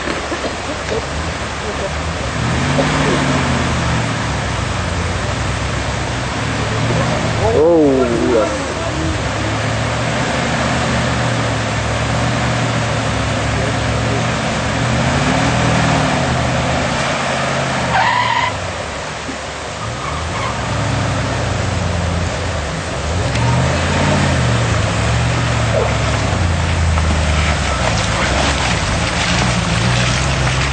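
A Land Rover Defender's engine working in low gear through a rocky creek crossing. The revs rise and ease off several times, about three seconds in, midway and near the end, over a steady rush of water.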